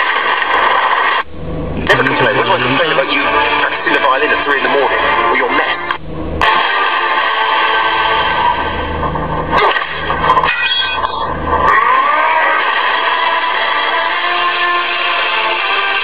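A film soundtrack playing on a portable GPS unit's video player: voices with music underneath, broken by a few abrupt cuts.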